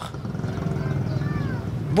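Livestock calling, with a few faint cries falling in pitch about a second in, over a low steady drone.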